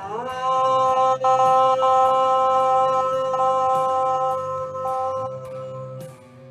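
A woman's voice chanting one long, steady 'Om', gliding briefly up into pitch at the start, held about five seconds and fading near the end, over background heavy guitar music.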